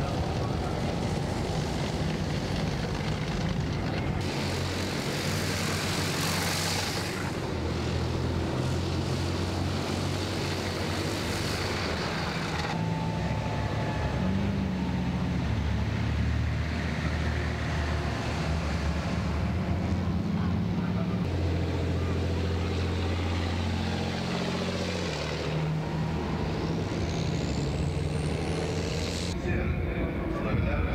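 Heavy military vehicles driving past in a column, their big diesel engines running in a steady low drone that changes pitch each time a different vehicle comes through. A faint high whine rises near the end.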